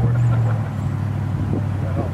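A vehicle engine running with a steady low hum that eases off after about a second and a half, with faint voices under it.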